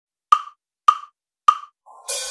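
A count-in of three evenly spaced, sharp wooden clicks, about 0.6 s apart, with silence between them. A faint note starts just before the end.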